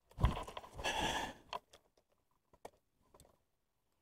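Handling noise as a landed bass is gripped in the boat: a rustling scuffle for about a second and a half, then a few light clicks.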